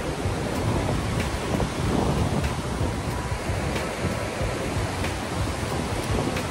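Fast mountain river rushing over boulders: a steady, loud wash of white-water noise, with wind buffeting the microphone.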